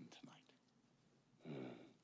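Mostly near silence, broken by one short, muffled vocal sound from a man, falling in pitch, about a second and a half in.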